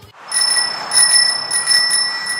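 Bicycle bell rung over and over in quick strokes, a bright metallic ring that starts about a third of a second in and keeps going.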